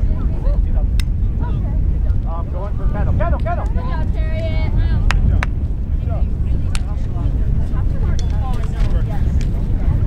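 Steady wind rumble on the microphone, with distant shouts and calls from players and spectators across the field, one held call about four seconds in, and a few sharp clacks.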